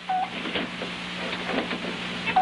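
Small clicks and taps of tools and parts as a television set is worked on, with a short high tone just after the start, over a steady low hum.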